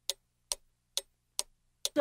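Clock ticking: five sharp, evenly spaced ticks, a little more than two a second.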